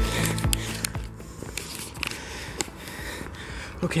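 Background music with a steady beat that stops about a second in, leaving a quiet outdoor hiss with a few faint knocks.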